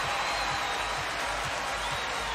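Large basketball-arena crowd cheering and applauding, a steady wash of noise from fans on their feet with the game tied in the final seconds.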